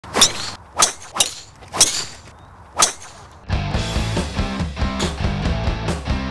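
Five sharp cracks of a driver striking a golf ball in quick succession over the first three seconds. Guitar music with a steady beat starts a little past halfway.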